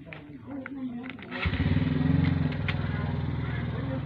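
Small electric motor and gearbox of a toy RC tractor starting suddenly about one and a half seconds in and then running steadily.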